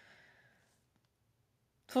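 A faint breath out from a woman pausing between sentences, then near silence. Her speech resumes just before the end.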